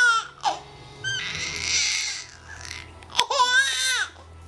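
Baby laughing: a high-pitched laugh right at the start and another near the end, with a breathy stretch in between.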